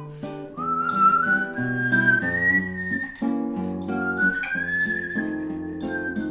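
Instrumental break: a high whistling melody in two long, sliding phrases, rising and then easing down near the end, over a nylon-string classical guitar accompaniment.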